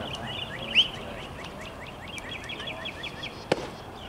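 A small songbird calling in rapid runs of short, high chirps over outdoor background noise. There is one sharp crack about three and a half seconds in.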